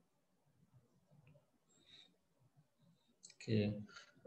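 A few faint computer-mouse clicks over near silence, then a short spoken word near the end.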